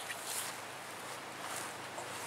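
Faint sounds of a long spoon stirring a thick, rehydrated meal in a camp bowl, with a couple of soft wet scrapes over a steady outdoor hiss.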